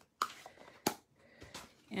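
Cardstock being picked up and handled on a tabletop: two sharp taps well under a second apart, with a light paper rustle after the first.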